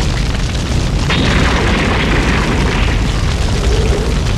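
Animated explosion sound effect: a long, loud, deep rumbling blast, with a harsher hissing layer joining about a second in.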